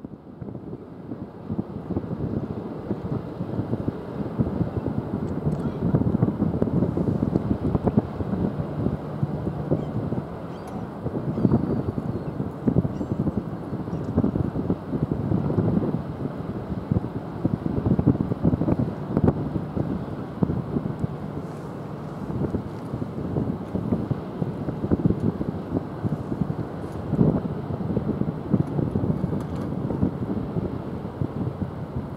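Wind buffeting the microphone in uneven gusts, over a faint low steady hum.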